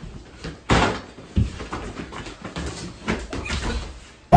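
Feet in rubber clogs scuffing and tapping on a laminate floor while a ball is kicked about, with a sharp thump just under a second in and a deep thud about a second and a half in.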